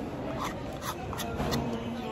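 A man eating in a restaurant dining room: a few light clicks of a utensil against a cup, and a short low hum about one and a half seconds in, over steady room noise.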